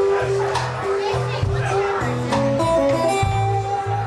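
Live blues music led by guitar. Held notes sit over a steady low accompaniment, with a run of single guitar notes in the second half and occasional percussive hits.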